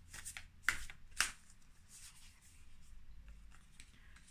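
Oracle cards being handled and drawn from the deck: a few short flicking and brushing sounds of card on card in the first second and a half, then faint handling.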